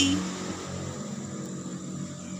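A low, steady hum with no distinct events.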